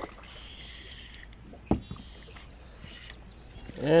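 Spinning reel being cranked as a small bass is reeled in toward a small boat, with one sharp knock a little under halfway through.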